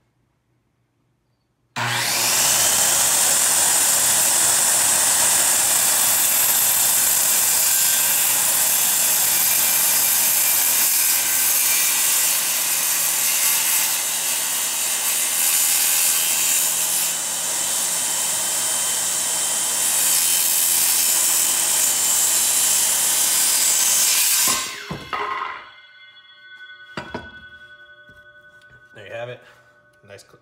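A DeWalt corded circular saw starts about two seconds in and cuts steadily through a wooden board for a little over twenty seconds. It is then switched off and winds down, and a few knocks follow near the end as the cut piece comes free.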